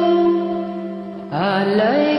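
A woman sings karaoke over a backing track into a wired earphone microphone. The first part is a steady held chord. About a second and a half in, her voice enters with a rising, wavering note.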